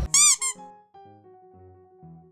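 An edited-in squeaky sound effect: a quick run of high chirps, each rising and falling in pitch, in the first half-second. It is followed by quiet keyboard-like background music of single held notes.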